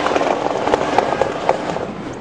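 Street crowd noise at a rally, broken by an irregular run of sharp taps, about four a second.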